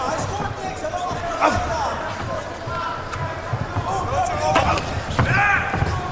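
Kickboxing fight heard ringside: occasional thuds of strikes landing over steady arena crowd noise, with shouted voices near the end.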